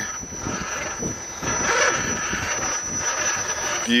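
Electric RC rock crawler, a custom Axial Wraith, crawling over rocks and wooden boards: its motor and geared drivetrain run steadily, with irregular scrapes and knocks from the tyres and chassis on the obstacles.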